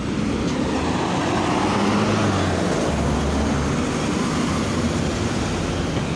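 Road traffic: a steady noise of passing vehicles, with a low engine rumble that is strongest in the middle.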